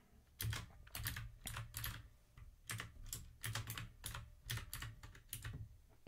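Typing on a computer keyboard: two runs of irregular keystrokes with a brief pause between them.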